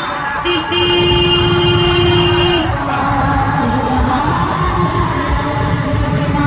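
A vehicle horn blows in traffic: a short toot about half a second in, then a steady held note lasting about two seconds. Low road and engine rumble from the moving motorbike runs underneath.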